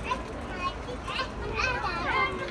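Young children's voices: short bits of chatter and vocal sounds, with a higher, livelier child's voice near the end.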